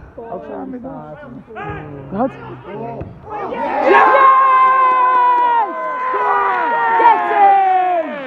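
Football crowd shouting as an attack builds, then bursting into loud cheering about three and a half seconds in as a goal goes in. One nearby voice holds a long shout over the roar.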